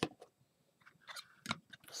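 A few faint, sharp taps and scuffs of a cardboard box being handled and set down on a table, the clearest about one and a half seconds in.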